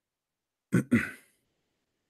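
A man clearing his throat: one short two-part burst about a second in.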